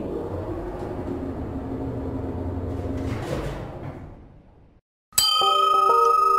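Show transition sound effects: a low drone with a soft whoosh fades away over the first four seconds or so. After a brief silence, a bright bell-like chime with a tinkling musical figure over it starts near the end, as the question card comes up.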